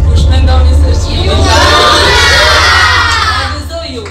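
A group of children cheering and shouting together, swelling about a second in and fading away near the end.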